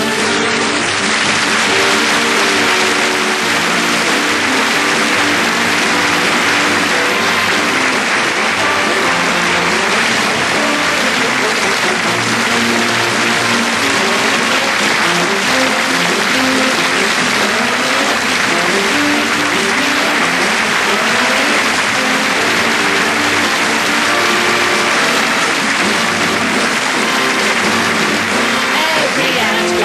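Theatre audience breaking into sustained applause at the start, over orchestra music playing underneath.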